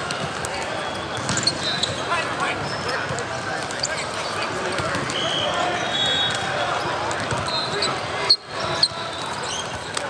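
Indoor volleyball hall din: many overlapping voices talking and calling, with sharp smacks of volleyballs being hit. The two loudest smacks come close together about eight seconds in.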